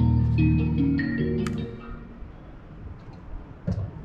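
Music made from a sonified DNA sequence of the myrtle rust fungus, with each DNA base mapped to its own note, playing back from music production software: several layered sustained notes stepping between pitches, fading out about two seconds in.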